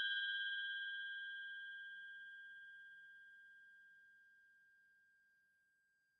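A bell-like chime sound effect ringing out after a single strike: one clear high tone with fainter higher overtones, fading steadily with a slight waver and dying away about four seconds in.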